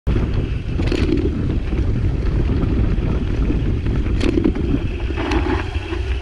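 Mountain bike riding over a dirt trail: a steady low rumble of knobby tyres on dirt and wind on the microphone, with short sharp rattles of the bike about a second in and twice near the end.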